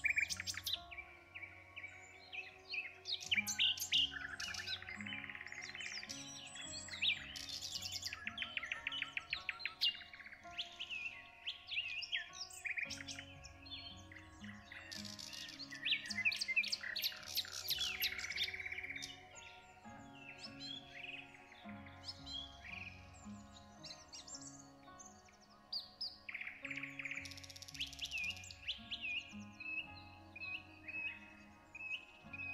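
Many songbirds chirping and trilling in quick, overlapping bursts over soft background music, with the birdsong thinning out after about twenty seconds.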